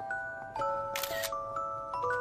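Light background music carried by bell-like mallet notes, with a smartphone camera shutter sound, a short crisp click, about a second in.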